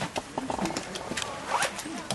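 Irregular crunching and rustling of several people walking on gravel in winter jackets, with faint voices of children.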